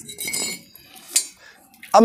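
Broken pieces of a cast chaff-cutter gear wheel clinking against each other and the concrete as they are handled: a ringing metallic clink, then one sharp clink a little past a second in.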